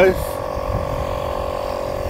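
A steady mechanical hum at a constant pitch, with a low rumble of wind on the microphone underneath.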